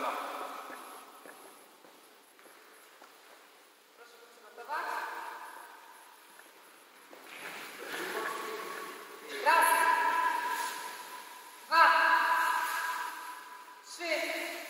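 A group of voices calling out push-up counts in unison in a large gym hall. Four drawn-out calls about two seconds apart begin about four seconds in, each fading slowly into the hall's echo.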